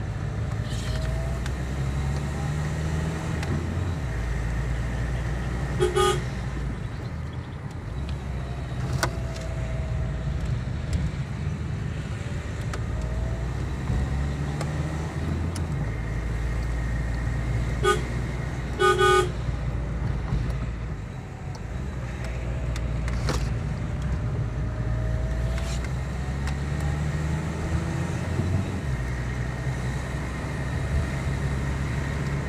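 Engine and road noise heard from inside a moving vehicle, with short horn toots: one about six seconds in and two close together around eighteen to nineteen seconds in.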